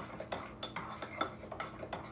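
A spoon stirring thick sourdough starter of flour and water in a crock, knocking and scraping against its sides in irregular clicks, about three a second.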